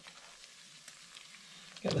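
Pan of lemon tea simmering on the stove with a faint hiss and bubbling, and a few soft clicks as tea bags are mashed in it with a spatula.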